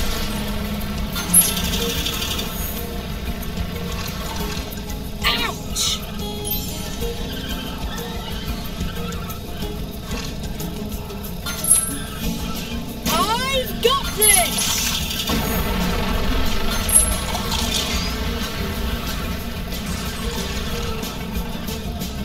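Kart-racing video game audio: steady background music with short chime-like effects every few seconds and a run of sliding, squealing pitch sweeps about thirteen to fifteen seconds in.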